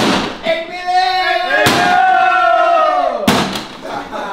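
A person screaming in long, high, held yells of excitement, broken by three loud bangs of objects being knocked over and slammed down: one at the start, one about a second and a half in, and one near the end.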